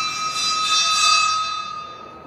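A loud, steady, high-pitched whistle with a hissy edge that fades away near the end.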